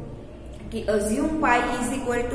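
Speech only: a woman talking in Hindi, with a short pause before she speaks again about half a second in.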